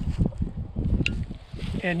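Wind buffeting the microphone, an uneven low rumble, with a brief high chirp about a second in.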